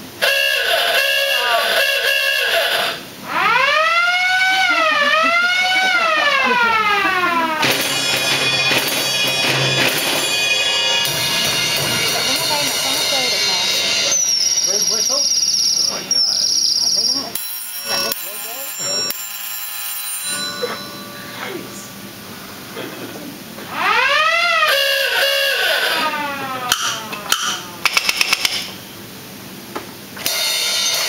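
A theatre pipe organ's silent-movie sound effects played in turn. A bell rings in short repeated bursts, then a siren winds up and down twice, then comes a high whistle. The siren wails once more near the end, followed by a few sharp knocks.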